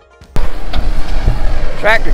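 Music ends, then a sudden cut to a loud, steady low rumble of a heavy machine's engine running, mixed with outdoor noise. A man's voice starts near the end.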